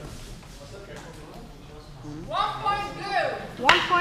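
A drawn-out shout rises and falls in pitch in the middle, then near the end one sharp, loud clack of a sword blow lands, with the hall's echo after it.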